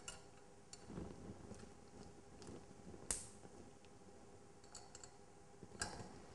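Faint, scattered clicks and light taps as crocodile-clip test leads are handled and clipped onto the metal electrodes in the beakers, the sharpest click about three seconds in, over quiet room tone.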